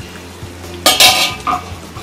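Stainless-steel pot lid set down on a countertop: a loud metallic clatter about a second in, then a smaller clank.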